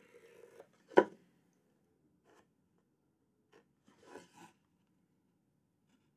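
Pencil marking lines on a wooden board, a few faint short scratching strokes, with a single sharp knock about a second in.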